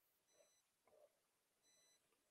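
Near silence: a gap in the gated call audio.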